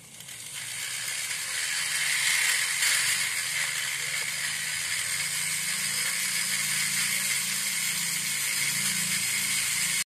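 A rotary die grinder running with its bit inside the port of a motorcycle's aluminium cylinder head, porting and polishing it: a dense steady hiss over a low hum. It builds up over the first two seconds, then runs evenly.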